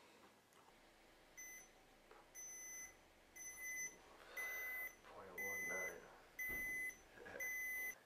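Handheld digital breathalyzer beeping: seven steady single-pitch electronic beeps, about one a second, starting about a second and a half in, the first one short.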